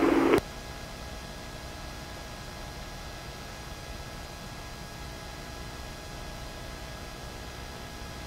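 A radio transmission cuts off abruptly just after the start, leaving the steady hiss and faint hum of an open police radio and intercom audio channel between transmissions.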